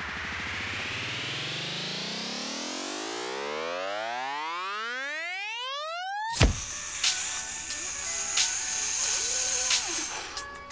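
A synthesised rising sweep, its pitch climbing steadily for about six seconds, ends in a sudden hit. Music follows.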